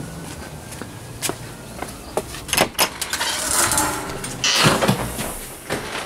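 A house's storm door being unlatched, opened and walked through: a few sharp clicks from the latch and handle, then a rushing, rattling stretch as it swings, and louder knocks with footsteps near the end.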